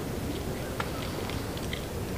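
Quiet sports-hall ambience: a steady low background hum with a few faint, short clicks.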